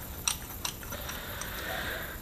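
A few faint clicks of small metal gearbox parts being handled, over quiet workshop room tone.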